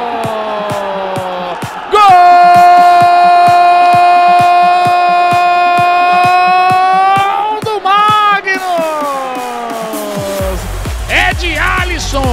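Futsal TV commentator's drawn-out goal cry: one long shout held at a steady pitch for about five seconds, then a wavering cry that falls away. Background music with a steady beat runs under it, and a heavy electronic bass comes in near the end.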